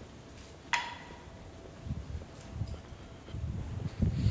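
Quiet railway-station ambience with a faint steady hum. A single sharp metallic clink rings out about three-quarters of a second in, and from about halfway the low thumps of footsteps on the platform come in and grow louder.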